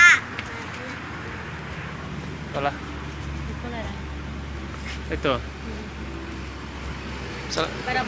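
Outdoor ambience: a steady low rumble with a few short, distant pitched calls spread through it.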